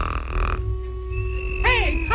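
Soundtrack of a 1937 animated cartoon: a held steady orchestral note, then near the end a cartoon character's vocal call that swoops up and down in pitch.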